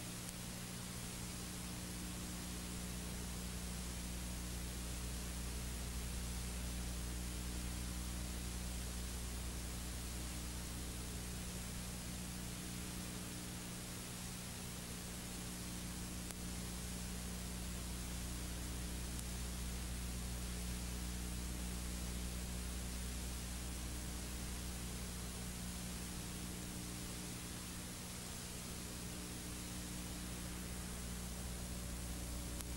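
Steady static hiss over a low, steady electrical hum: the background noise of an open broadcast audio feed.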